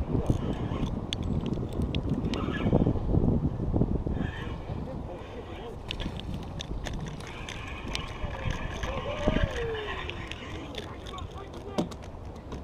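Wind buffeting the microphone in a low rumble, heaviest in the first few seconds, with people talking faintly and a few light clicks.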